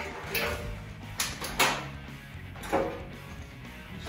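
Background music, with a few short knocks and handling sounds as wet backpack parts are pulled out of a front-loading washing machine drum.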